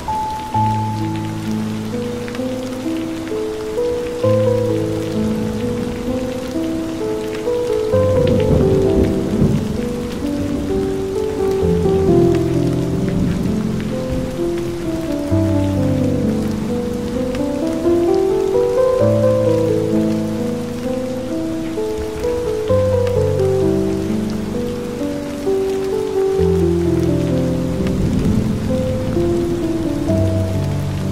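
Steady rain mixed with slow, calm ambient music said to be tuned to 432 Hz: long held notes and soft chords that step slowly up and down. The rain thickens into denser low swells now and then.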